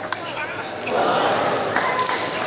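Table tennis ball striking the bats and table in the last hits of a rally. About a second in, voices rise loudly as the point ends.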